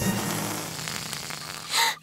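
Cartoon sound effect over fading background music: a noisy rush that fades away over about a second and a half, then a short bright blip just before the end.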